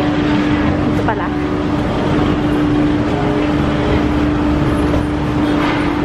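Busy city street traffic: a steady engine hum from vehicles close by over a constant traffic noise, with people's voices in the background.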